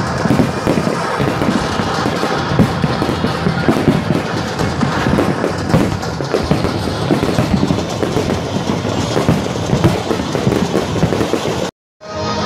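A fireworks display bursting and crackling continuously in rapid, overlapping bangs, with music playing underneath. The sound cuts off suddenly just before the end.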